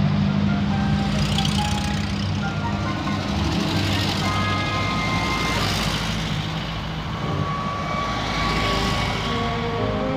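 Air-cooled engines of a convoy of VW Safari (Type 181) cars running at low road speed, a steady low rumble, with music playing over it.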